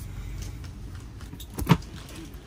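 T-shirts being handled and laid out on a stone shop counter: soft fabric rustling over a low steady hum, with one short sharp knock against the counter about a second and a half in.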